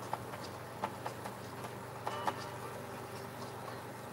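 A few light, irregular taps and clicks of a paintbrush dabbing acrylic paint onto a canvas, a small cluster of them about two seconds in, over a steady low hum.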